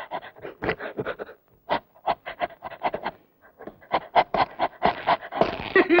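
A dog panting in quick, short breaths, about five a second, with two brief pauses.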